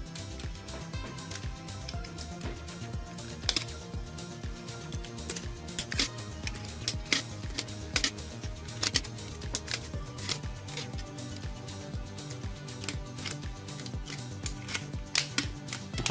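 Background music, with irregular light clicks and rustling of enamelled copper magnet wire being hand-wound around a power-tool armature.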